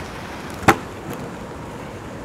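A single sharp knock on a tabletop about two-thirds of a second in, over steady background noise.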